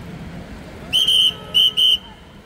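A whistle blown in three sharp blasts about a second in, the first the longest and the last two in quick succession.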